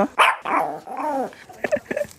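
A dog barking, about four barks in quick succession, each rising and falling in pitch.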